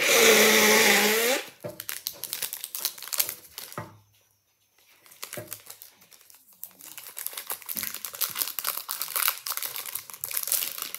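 A boy's loud drawn-out vocal cry for about a second and a half, then a chocolate bar's wrapper crinkling and tearing as it is unwrapped by hand, with a short pause about four seconds in.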